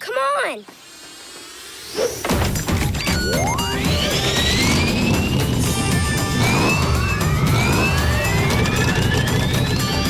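Cartoon build-sequence soundtrack: a quiet rising whoosh, then about two seconds in a loud electronic music cue with repeated rising synth sweeps, mechanical clanks and hits over a low rumble.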